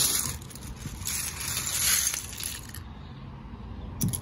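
Plastic LEGO bricks clattering as they are poured out of a plastic salad-spinner basket onto a towel: a short burst at the start, then a longer rattle from about a second in until near three seconds.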